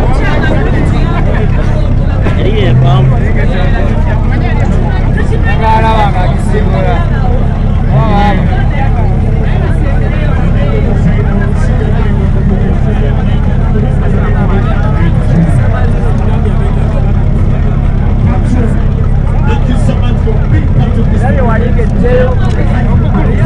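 Crowd of spectators talking and calling over one another, with a steady low hum running underneath.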